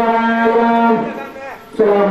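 A boy's voice holding one long sung note of a recitation into a handheld microphone. The note falls away about a second in, and singing resumes just before the end.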